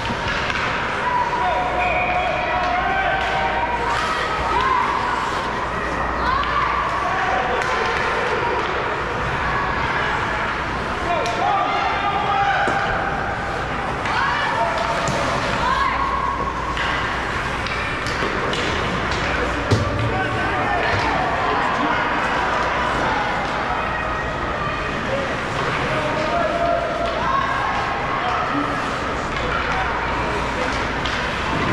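Indoor ice rink during a youth hockey game: overlapping, indistinct spectator voices calling and chatting in a reverberant hall, with scattered sharp knocks of sticks and puck and one louder knock about two-thirds of the way through.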